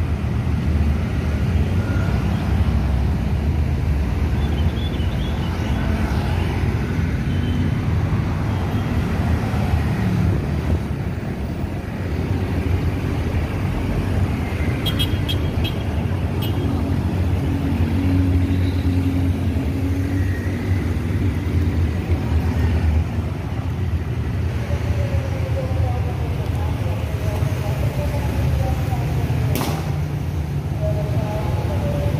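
Busy city street traffic: a steady rumble of motorcycle and car engines passing close by, with one engine's note changing pitch near the end.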